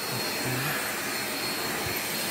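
Deerma 600 W corded stick vacuum cleaner running at full suction while its floor head is pushed over a rug: a steady rushing motor-and-airflow noise with a thin high whine over it.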